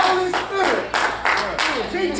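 Hands clapping in a steady rhythm, about three claps a second, with a woman's voice preaching over them.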